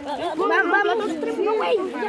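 Several high-pitched voices chattering over one another, children's voices among them.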